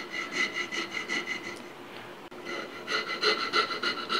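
Steel riffler file rasping the wooden buttstock's receiver inletting in quick, short, repeated strokes, several a second, with a brief lull about halfway through. The strokes are relieving high spots where the receiver bears on the wood.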